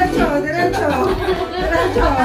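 Several people's voices chattering and calling out over one another, too jumbled to make out words.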